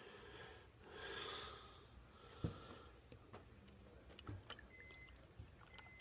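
Near silence: a couple of faint breaths in the first second and a half, then one light click about two and a half seconds in, with a few smaller ticks after it.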